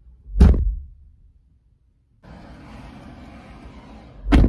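A car door thumping shut once, loudly, about half a second in. After a short gap of dead silence, a faint steady hiss of the car's cabin.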